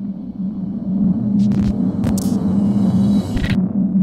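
Logo-animation sound effect: a steady low rumbling drone that swells after about a second, broken by three short bursts of hiss.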